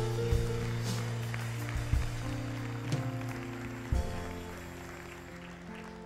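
Soft sustained keyboard chords from the church band, changing every second or so and fading lower towards the end, under light scattered applause from the congregation.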